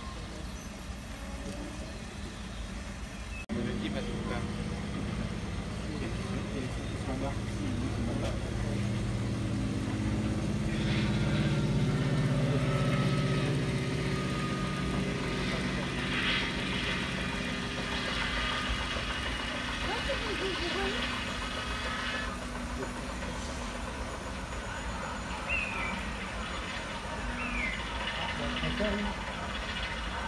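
Background murmur of visitors' voices in a hall, with a steady low engine-like hum that comes in sharply about three and a half seconds in, swells, and fades away after about twenty seconds.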